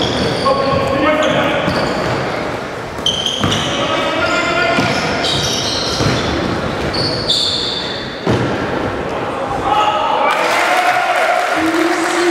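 Basketball play in an echoing gym hall: a few sharp bounces of the ball on the wooden floor, and sneakers squeaking in short high chirps as players cut and stop, with players' shouts.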